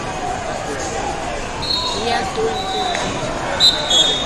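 Wrestling shoes squeaking on the mat, in short high squeaks about halfway through and again near the end, with a sharp thump shortly before the end, over the babble of a large hall full of people.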